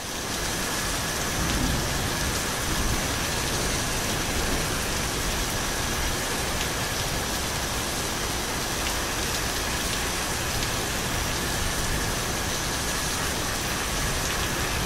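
A steady, even rushing noise like heavy rain, with two faint thin high tones held inside it.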